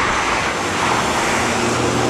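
Cars passing on the road close by: a steady rush of tyre noise with a low engine hum.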